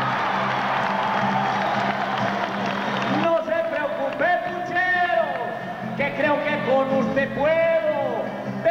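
A crowd cheers and applauds over a strummed acoustic guitar. About three seconds in the cheering dies away and a man begins singing a trova verse over the guitar, holding long, gliding notes.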